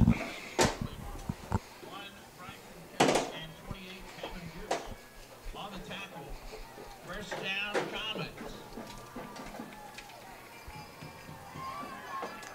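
Football stadium ambience between plays: scattered distant voices and shouts from the crowd and sidelines, with a few sharp knocks or claps and music in the background.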